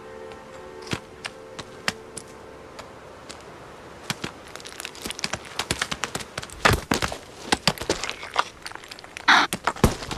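Male markhor fighting on rock: sharp cracks and knocks of clashing horns and hooves on stone, coming faster and louder from about four seconds in, with held orchestral notes fading in the first second.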